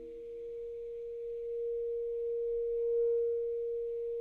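Solo saxophone holding one long, almost pure-sounding note that swells gradually to its loudest about three seconds in, then eases slightly.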